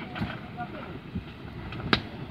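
Small wood fire roasting cashew nuts in a metal tin, the oil from the cashew shells burning with tall flames: a steady low noise with a couple of soft pops and one sharp crack near the end.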